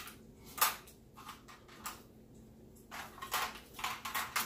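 Small plastic toy parts clicking and knocking against each other: a few light, scattered knocks, with a quicker run of clicks near the end.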